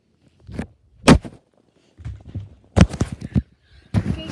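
Knocks and thumps from a handheld phone being moved and bumped, with low rumbling handling noise between them; the loudest knock comes about a second in, and a quick cluster of knocks follows near the end.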